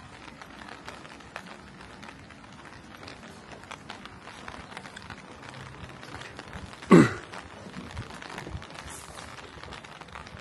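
Light rain pattering on a wet street, a steady hiss dotted with small drip ticks. About seven seconds in comes one brief, loud sound that falls in pitch.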